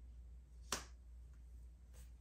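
A single sharp click about two-thirds of a second in, as a tarot card is laid down on the tabletop, with a few faint ticks of card handling around it.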